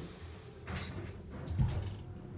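Winding-drum elevator coming to rest: the motor's steady hum dies away at the start, followed by a brief scrape and a heavy low thump about one and a half seconds in.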